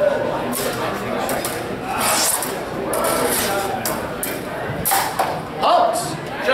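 Indistinct voices and chatter echoing in a large hall, with several sharp clicks and knocks scattered through.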